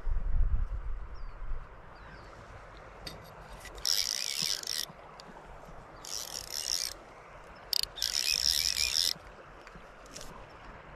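Fly reel's click-pawl drag ratcheting in three bursts of about a second each as line is wound in on a hooked fish. A low rumble sounds in the first second or so.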